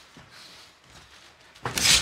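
Faint, even room ambience of a near-empty boxing venue, with no distinct impacts. A man's commentating voice starts near the end.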